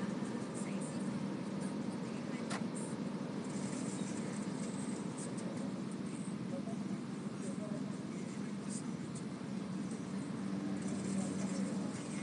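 Steady low hum of a car idling while stopped in traffic, heard from inside the cabin, with a single short click about two and a half seconds in.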